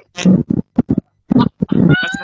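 Short bursts of a person's voice that are not words, coming and going in quick spurts over a video call.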